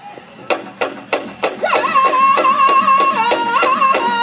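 Powwow drum group starting a men's chicken dance song: the big drum struck in a steady beat, about three strokes a second, joined just under two seconds in by high-pitched male singing holding a long high note.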